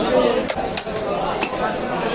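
Sharp metallic clinks of knives and metal utensils at a fish-cutting stall, two distinct strikes, over a steady din of market voices.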